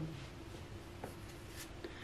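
Faint handling of round oracle cards: a light rubbing of card stock against fingers and other cards, with a soft tick about a second in.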